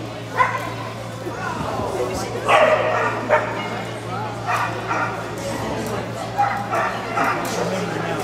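A small dog barking repeatedly in short barks as it runs an agility course, several barks spread through the few seconds.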